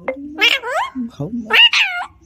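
Alexandrine parakeet saying "mama" twice, in drawn-out, high-pitched calls that rise and then fall in pitch.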